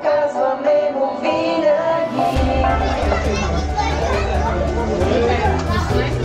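Music with singing for about the first two seconds, then the chatter of a crowd of children and adults indoors, over a steady low hum.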